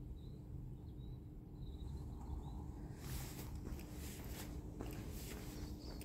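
Faint outdoor street ambience: a low rumble with a steady hum, and footsteps on pavement from about halfway through as someone walks along.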